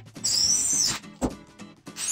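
Ryobi cordless drill motor run in two short bursts, a high whine that rises as it spins up and drops as it stops, over background music with a steady beat.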